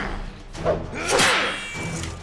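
Cartoon fight sound effects: a scythe swung through the air, two swishes in quick succession, the second longer, over background music.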